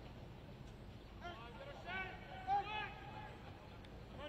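Faint, distant voices calling out on the field over quiet stadium ambience, with one longer held call near the end.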